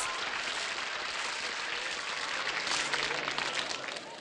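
Applause: many hands clapping steadily, easing off near the end.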